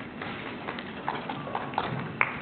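Light, scattered applause from a small audience: a few separate claps at irregular intervals.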